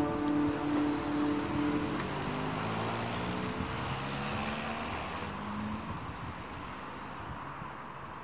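A final held accordion chord dies away over the first two seconds. Then a motor vehicle passes on the road, its engine note rising briefly before the noise slowly fades.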